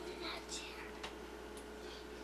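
A child whispering faintly, with a small click about a second in, over a steady low hum.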